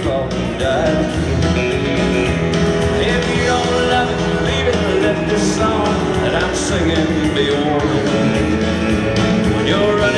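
Live country band playing an instrumental break with guitars to the fore, steady and loud.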